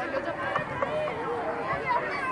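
Crowd chatter: many voices talking over one another, some of them high-pitched.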